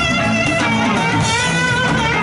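Live band playing: guitar leading, with a drum kit and keyboard underneath, in a steady, continuous passage.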